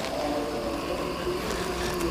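A steady background drone, with a low hum and faint steady tones, and no distinct event.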